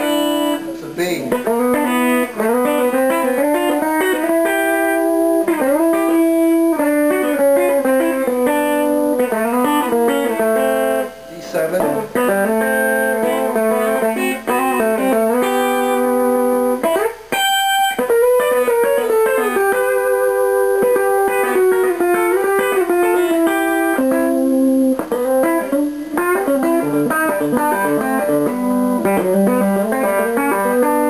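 Fender Telecaster electric guitar playing an up-tempo country lick in thirds, with double-stops and pull-offs run in quick succession. It pauses briefly twice, about a third and a little over half way through, with a short click at the second pause.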